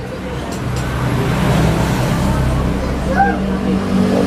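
A low, steady motor rumble with a hum in it that builds after the first second and fades just before the end, like a vehicle running close by.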